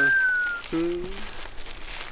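Plastic bag crinkling as it is handled and pulled open. A single thin whistle, falling slightly in pitch, sounds at the start, and a short vocal sound comes about a second in.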